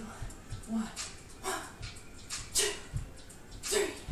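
Soft low thuds of bare feet jogging in place on an exercise mat, about two a second. Over them come short, high whining yelps about once a second.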